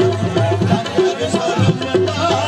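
Live qawwali music: a brisk tabla beat under steady held instrumental notes.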